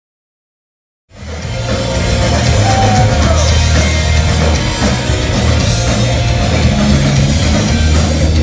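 Silence for about a second, then a punk rock trio playing live with electric guitar, bass and drum kit, loud and steady from the sudden start.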